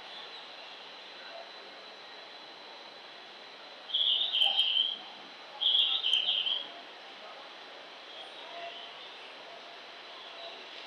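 Recorded bird-chirp guidance sound from a station platform speaker, the chirping audio cue Japanese stations play to guide visually impaired passengers: two loud bursts of high chirping, each just under a second, about four and six seconds in, with fainter repeats later over a steady platform hum.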